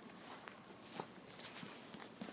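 Faint footsteps on a concrete walkway, a few steps about half a second apart.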